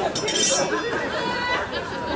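Steel swords clashing: a bright ringing clang about half a second in and a fainter ring a second later, over crowd chatter.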